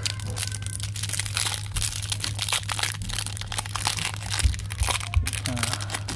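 Clear cellophane wrapper of a trading-card pack crinkling and crackling as it is pulled open by hand, in many quick irregular crackles.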